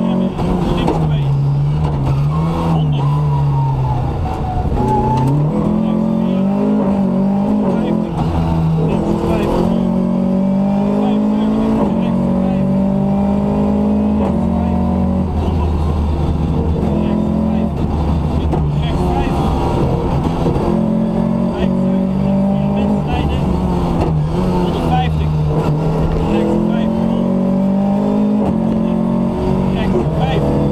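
Rally car engine heard from inside the cabin, revving hard and climbing in pitch through each gear, then dropping back at the shifts and on lifts for corners.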